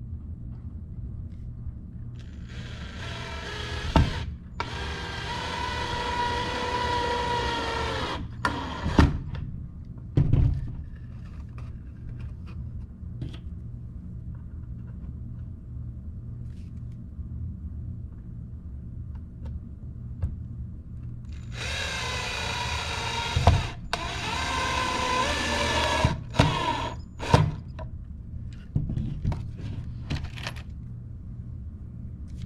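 Cordless drill running twice, each time for about five to six seconds, with its bit working into the pine roof boards of a wooden bird feeder. A few short knocks of wood and tool fall between and around the runs.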